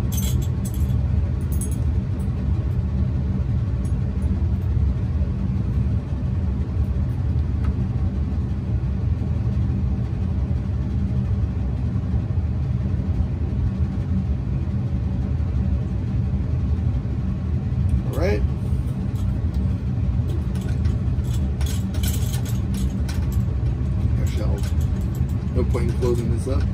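Steady low rumble of laboratory ventilation, typical of a running fume hood, with a few light clicks of glassware and a screw cap in the last few seconds.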